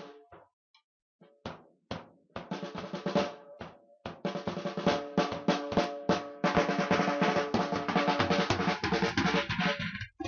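Acoustic drum kit being played: after a brief pause, scattered separate strikes build into fast, dense fills and rolls in the second half.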